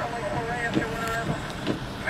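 Indistinct, muffled talk too unclear to make out, over a steady low background rumble.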